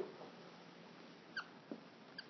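A mostly quiet room. About one and a half seconds in, a dry-erase marker gives one short squeak as it is drawn across the whiteboard, followed by a faint tap.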